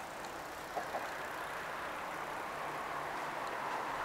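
Road traffic passing: a steady tyre-and-engine noise that swells toward the end as a vehicle draws near, with two light taps about a second in.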